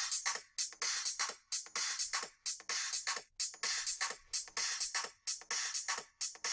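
A two-bar drum break from the MPC's stock content playing as a loop: a steady run of crisp drum hits with little low end, at about 128 BPM.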